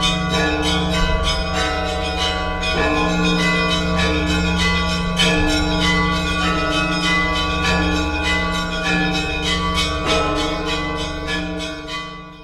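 Church bells ringing in a rapid peal of many bells, quick strikes over the steady hum of a deep bell, fading out near the end.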